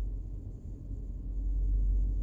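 Steady low rumble inside a car cabin.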